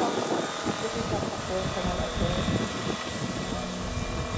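Scale RC model of a Boeing CH-47 Chinook hovering, its tandem-rotor drive giving a steady high whine over a rotor rumble, with a voice talking over it.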